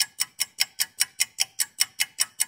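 Ticking clock sound effect, even quick ticks about five a second, marking a time skip.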